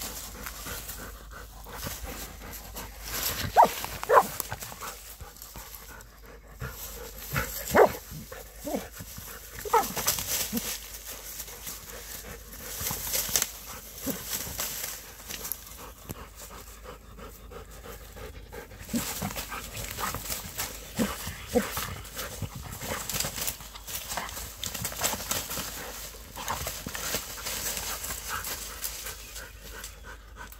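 A Plott hound worrying a groundhog in dry leaves and brush: a continual rustling and crackling of leaves and twigs, with the dog's panting. A few short cries that fall in pitch stand out about four, eight and ten seconds in.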